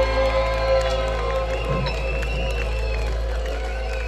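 Live rock band ending a song on a held chord that fades out about a second and a half in, followed by the crowd cheering and shouting.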